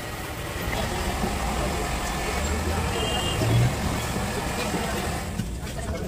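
Steady low rumble and hiss of background noise, swelling a little midway, with faint voices.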